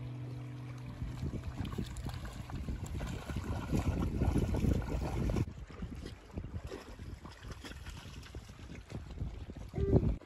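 Wind buffeting the microphone with water lapping at the shore, a rough gusting rumble that turns quieter about halfway through.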